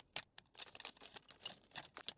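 Plastic LEGO minifigure blind-bag packet crinkling faintly as it is torn open and shaken, with a run of small irregular crackles and clicks as the minifigure pieces tip out.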